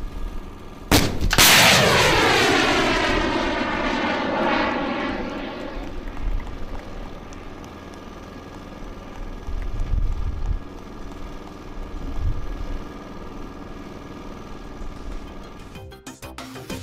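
A fourth-generation miniaturized air-defence missile launching with a sharp crack about a second in. Its rocket motor roars and falls in pitch as it flies away, fading over several seconds into a low rumble with a few dull thumps.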